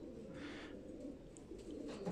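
Faint cooing of domestic pigeons, running steadily through the pause.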